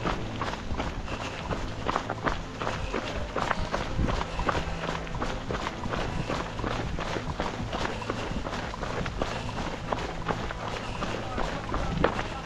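Footfalls of a runner on a fell trail, a run of quick, uneven steps over a steady low hum.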